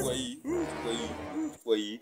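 A person's voice making drawn-out, wordless sounds: a long low moan through the middle, then a short rising-and-falling one near the end.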